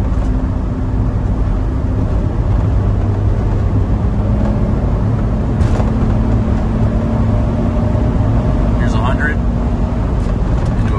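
Cabin drone of a 1996 Suzuki Every Joy Pop Turbo's 660 cc three-cylinder turbo engine together with road noise, cruising at about 90 km/h in a manual gearbox. The engine note drops a little about two seconds in, then holds steady.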